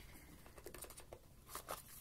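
Faint rustling and a few light ticks of a cardboard phone box and its paper insert being handled and lifted out.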